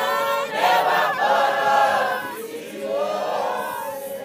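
Mixed church choir of men and women singing unaccompanied. A last, softer phrase is held past the middle and dies away near the end.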